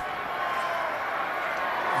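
Stadium crowd noise from a large football crowd, a steady wash of many voices with no single event standing out.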